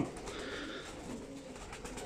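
Faint cooing of domestic pigeons.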